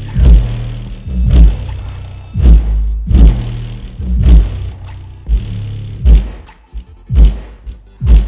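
Trap music played loud through a Genius Audio N4-12S4 12-inch shallow-mount subwoofer, heavy bass hits landing about once a second, each dying away before the next.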